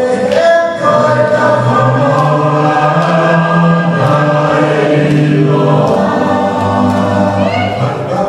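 A group of voices singing together in long held notes, the song for a Tongan tau'olunga dance, with a short rising high voice near the end.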